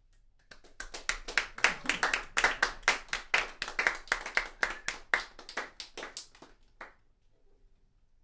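A small audience clapping, beginning about half a second in and tapering off to a last few claps near the end.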